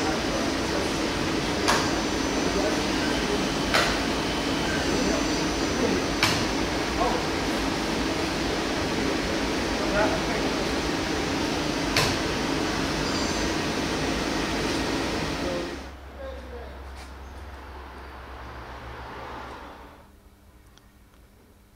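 Doosan Puma 2600 CNC lathe running: a steady mechanical whir and hiss with a sharp click every few seconds. About three-quarters of the way through, the noise drops away to a quieter low hum.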